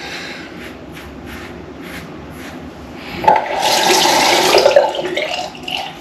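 Water running from a tap for about two seconds, starting sharply about three seconds in.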